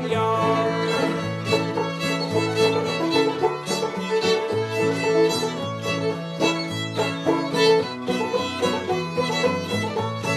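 Old-time string band playing an instrumental break with no singing: fiddle carrying the melody over banjo and guitar in a steady rhythm.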